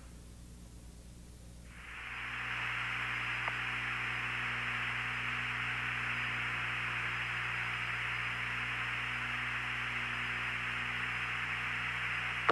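Steady hiss of an open radio communications channel over a low hum, the hiss coming in about two seconds in after a quieter stretch of hum alone.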